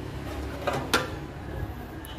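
Two short sharp clicks about a second in, a quarter second apart, from a hand handling the open plastic belt cover over a bench drill's pulleys.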